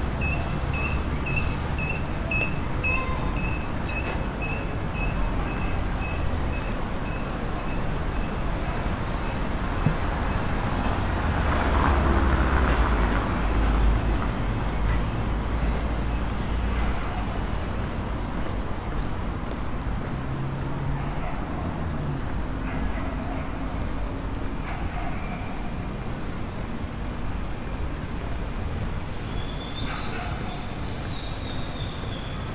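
City street traffic: cars moving along the street, with one vehicle passing loudest about twelve seconds in. Through the first several seconds a high electronic beep repeats about twice a second.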